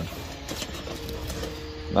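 Gloved hands lifting an Xbox 360 motherboard out of a cardboard box: faint cardboard and board handling clicks over a low steady rumble. A steady hum-like tone comes in about halfway through and holds to the end.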